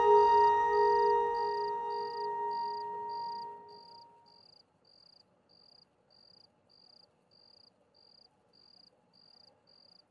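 Held background-music notes fade out over the first four seconds or so. A cricket chirps evenly at a high pitch, about twice a second, and carries on faintly alone once the music has gone.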